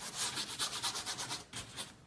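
Large flat paintbrush scrubbing thick paint onto watercolor paper in rapid back-and-forth strokes, a dry rasping brush on paper, stopping just before the end.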